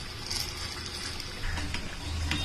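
Batter-coated nendran banana fritters deep-frying in a pan of hot oil: a steady sizzle of bubbling oil.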